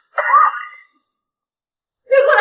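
A child's voice calling out 'mama' once, briefly, with a rising pitch.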